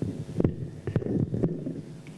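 Handling noise from a live microphone heard through the PA: a run of dull thumps and rubbing as the handheld mic is fitted into its stand clip, stopping about three quarters of the way through, over a steady electrical hum.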